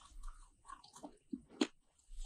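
Faint eating sounds: soft chewing and crackly bites, with a couple of short crisp crunches after the halfway point, the sharpest near the end.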